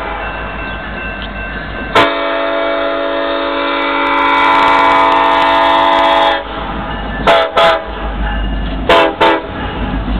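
The lead BNSF diesel locomotive's air horn: one long multi-note blast of about four seconds, followed by two pairs of short toots. The locomotives' diesel engines rumble underneath, growing louder near the end as they pass close.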